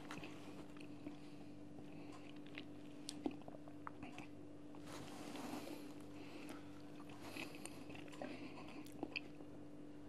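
Quiet mouth sounds of a man eating spoonfuls of thick strained yoghurt, with a few faint clicks of a metal spoon and a soft scrape as he scoops from the container about halfway through.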